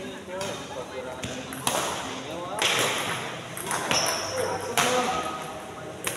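Badminton rackets striking a shuttlecock during a doubles rally, four sharp hits about a second apart, with players' voices between them.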